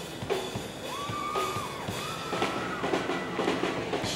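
High school marching band playing with drums. The melody slides up to a held high note and drops back down, twice, over a steady drum beat.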